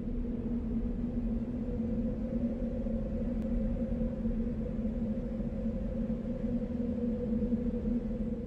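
A steady low drone holding one pitch over a rumble, without a beat, leading into a dance track that starts just afterwards.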